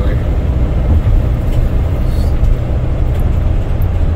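Steady low rumble of a van in motion heard from inside its cab: engine and road noise.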